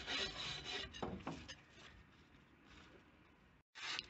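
A hand scraper rasping across the steel weed hatch lid, scraping off the old rubber seal and grime. The strokes come thick and loud in the first second and a half, then turn faint, and the sound cuts off abruptly just before the end.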